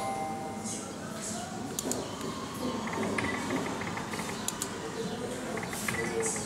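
Slot machine electronic sound effects, with groups of quick high beeps from about halfway in, over background voices and scattered clicks.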